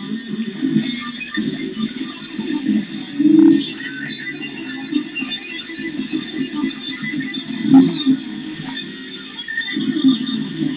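Electric guitar played as a single-note improvised line in F#, the notes changing quickly, with louder accents about a third of the way in and again near the end.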